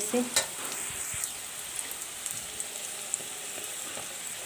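Sliced onions, green chillies and garlic sizzling steadily in hot oil in a metal wok, with a few faint crackles, turmeric and chilli powder just added on top.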